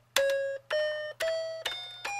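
Megcos musical toy telephone playing an electronic chime note as each number key is pressed: about four notes, roughly two a second, each a step higher than the last, climbing a scale.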